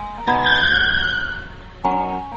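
A car tyre-screech sound effect over guitar music: one high squeal that starts just after the beginning, falls slightly in pitch and fades out after about a second.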